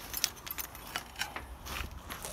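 Clay roof tiles clinking and knocking against one another as they are handled: a few light, irregular clinks.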